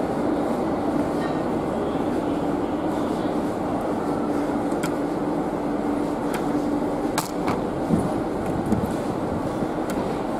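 Steady droning hum of a passenger train standing at a station platform, with a few sharp clicks and knocks about halfway through.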